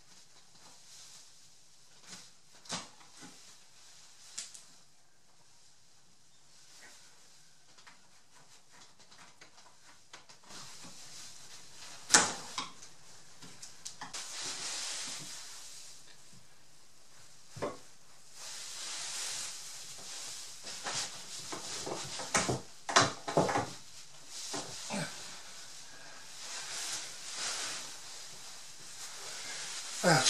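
A few faint ticks from a chisel paring a tenon in the first seconds. Then wood scraping on wood as a stretcher's tenon is worked into a leg mortise, with several sharp knocks, the loudest about twelve seconds in and a cluster of them around twenty-two to twenty-four seconds.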